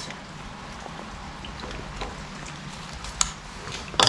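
A steady low hiss of background noise, with a few faint clicks as raw steak pieces are handled over a frying pan.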